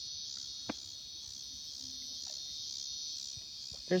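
Insect chorus: a steady, high-pitched drone of several overlapping tones, with one short click a little under a second in.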